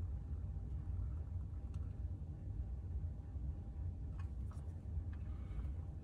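Quiet workshop room tone: a low steady hum with a faint thin tone above it and a few faint ticks, as solder is melted onto a joint.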